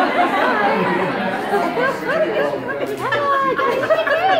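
Several people talking at once: overlapping, indistinct chatter of a small group in a room.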